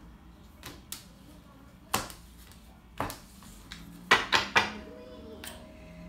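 Tarot cards handled and set down on a wooden table: a few sharp, separate taps and slaps, then a quick run of three louder ones about four seconds in.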